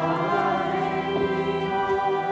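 A church choir singing a slow hymn for the veneration of the cross in the Good Friday liturgy, in long held notes that change a couple of times.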